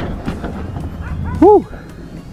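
A dog gives a single short, high yelping bark about one and a half seconds in, over a steady low background rumble.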